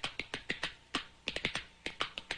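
A quick, uneven run of sharp taps, about six a second.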